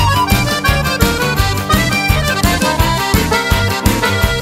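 Instrumental break in a rhythm-and-blues song: an accordion plays a lead melody over a full band with bass and a steady drum beat.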